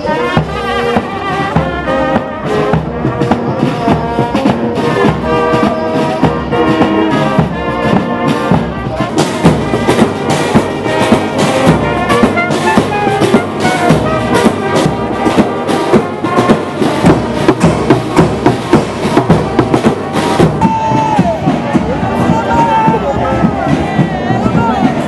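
Uniformed marching band playing brass horns with snare drums. A steady drumbeat comes in about nine seconds in and stops about twenty seconds in, while the horns play on.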